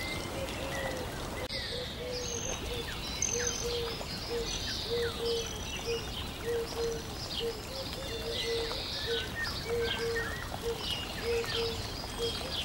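Birds chirping in a nature ambience bed: many short high chirps and quick pitch glides over a short low note that repeats about two or three times a second, with a faint steady hiss underneath.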